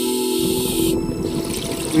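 A scuba diver breathing underwater through a regulator. A hiss of inhaled air runs for about the first second, then a rush of exhaled bubbles follows.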